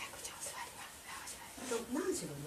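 A dog whimpering in excited greeting while it is petted, with a woman's voice near the end.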